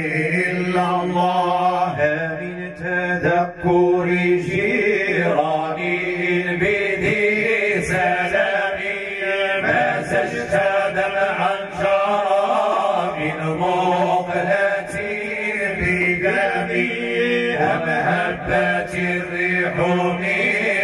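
Several men chanting Islamic devotional praise together into microphones, amplified through a sound system, in one continuous melodic stream over a steady low held note.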